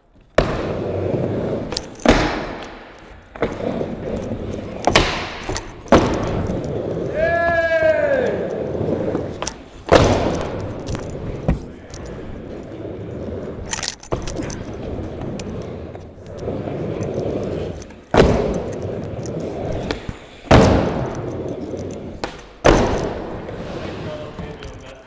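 Skateboard wheels rolling on a wooden mini ramp, with repeated sharp clacks and bangs as the board pops, hits the metal coping and lands back on the ramp. A brief squeal sounds about seven seconds in.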